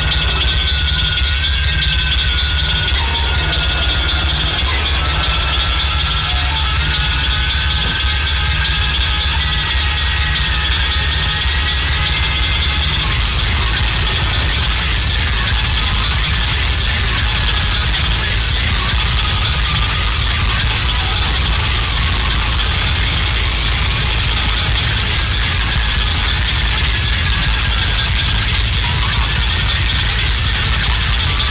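Electronic noise music: a deep, steady rumble with thin, wavering tones drifting slowly up and down above it, under a constant high hiss.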